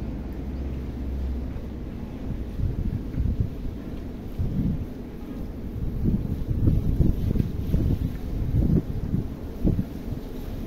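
Wind buffeting the microphone: a low rumble with irregular gusts, heavier in the second half.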